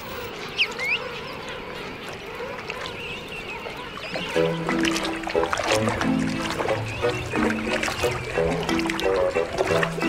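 King penguin chicks giving short rising whistles over a steady wash of water. About four seconds in, light music with a bouncy plucked rhythm comes in and carries on.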